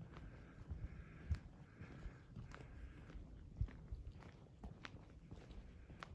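Quiet footsteps on a dirt and gravel path, a series of soft, irregularly spaced steps over a low background rumble.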